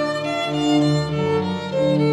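Instrumental church music: a violin melody over organ accompaniment, several notes held at once above a sustained bass line.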